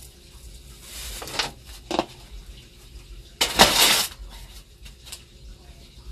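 Gritty mixture of soil and broken glass shards scraped and scooped in an aluminium foil tray: light clinks and scraping, one sharp click, and a louder rasping rush of under a second just past halfway.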